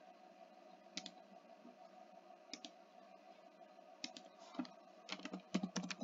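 Faint computer keyboard typing and mouse clicks: a few scattered clicks, then a quicker run of key presses near the end, over a faint steady hum.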